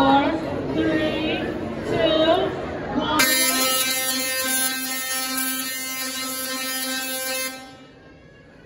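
Tesla coil firing: its spark discharge gives a loud, steady buzz at one pitch that starts about three seconds in and cuts off suddenly some four seconds later.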